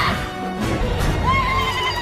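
Dramatic orchestral film score, joined a little past halfway by a high, wavering battle cry from a Na'vi warrior.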